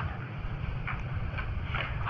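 A steady low background rumble during a pause in speech, with a few faint soft sounds about a second in and near the end.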